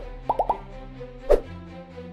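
Title-card jingle: a steady music bed with plop-like sound effects, a quick run of three short blips early on and a sharp percussive hit about a second and a third in.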